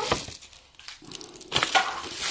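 Plastic packaging crinkling and rustling as a package is pulled out and handled. It starts about one and a half seconds in, after a few faint handling clicks.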